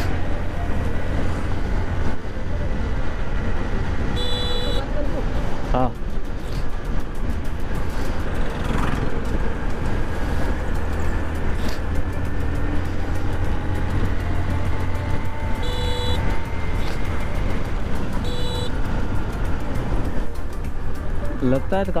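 Wind rushing over the microphone and a motorcycle engine running steadily while riding on the road, with three short horn beeps, one about four seconds in and two more close together later on.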